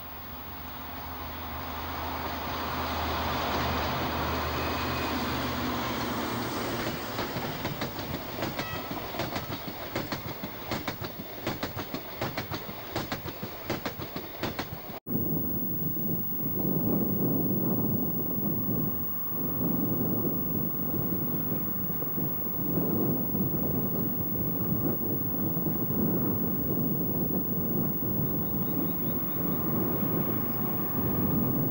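Talgo S/353 diesel locomotive and its train approaching with a rising engine note, then the clickety-clack of wheels over rail joints as it passes. Halfway through, the recording cuts to a second approach with a low, uneven rumble.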